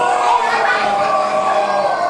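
A group of young children shouting and squealing all at once: many high voices overlapping with no break.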